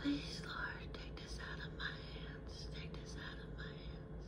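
A woman whispering in short phrases, fairly faint, just after a brief sung note ends at the very start.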